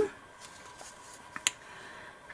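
Quiet room sound while hands press and smooth paper onto a collage page, with a single sharp click about one and a half seconds in.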